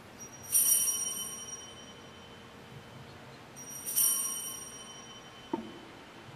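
Altar bells rung twice at the elevation of the chalice, marking the consecration. Each ring is bright and high and fades over a second or more, and a faint knock follows near the end.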